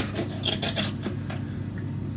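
Sharp kitchen knife cutting and scraping through a chicken eggshell, a quick run of small crackling scrapes as the shell gives way, ending after about a second and a half.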